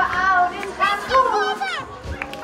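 Young children's high-pitched voices calling out and chattering excitedly, several at once.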